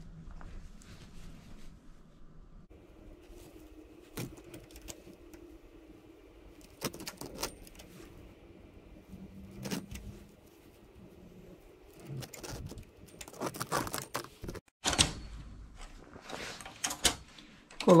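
Knitting machine's metal latch needles and needle bed clicking and clattering as they are handled and pushed by hand with a needle pusher. The clicks come in scattered bursts and are busiest in the last few seconds.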